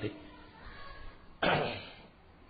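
A single cough about a second and a half in, starting suddenly and dying away within half a second.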